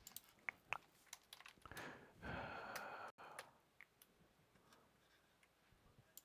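Near silence with a few faint, scattered clicks of a computer mouse while schematic pages are changed on screen, and a soft breathy hiss about two seconds in.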